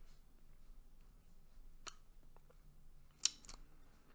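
Lip gloss tube and wand being handled: a faint click about two seconds in, then a short sharp double pop a little after three seconds, the loudest sound.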